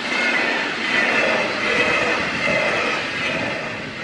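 A train passing at speed: a steady rush of wheel and rail noise with a faint high whine over it, easing slightly near the end.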